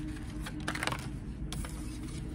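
A deck of tarot cards being handled and a card drawn from it, making a few light card clicks and flicks, grouped a little under a second in and again near the middle.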